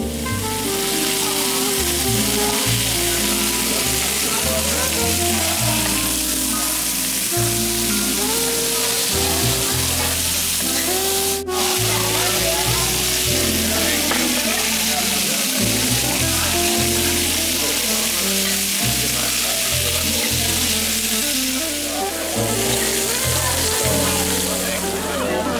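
Sliced steak sizzling on a hot serving platter, a loud, steady hiss that breaks off for an instant about halfway through. Background music plays underneath.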